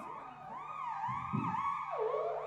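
Synthesizer playing a lead line in swooping pitch glides that rise and fall like a siren, with lower notes joining underneath toward the end.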